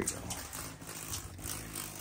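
Curtain fabric rustling and scraping as a hand pulls it aside from an RV window, with a few faint irregular clicks.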